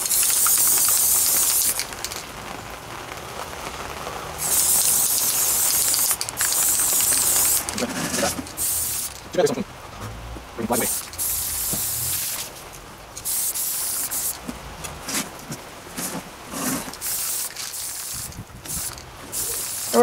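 Aerosol spray-paint can hissing in several bursts of one to three seconds each, with short pauses between them.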